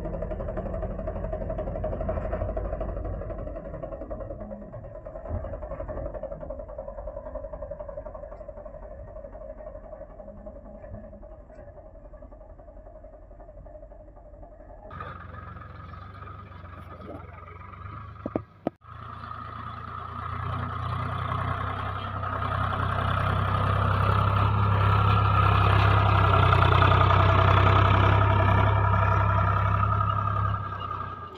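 Swaraj 735 FE tractor's three-cylinder diesel engine running steadily under load as it drags a leveling blade through soil. About halfway through, the sound cuts abruptly, drops out briefly, then gives way to a louder, fuller mix of voice and music.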